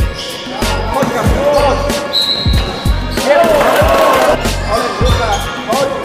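Basketball bouncing on a hardwood gym floor during play, a string of dull thumps roughly twice a second, with children's voices over it.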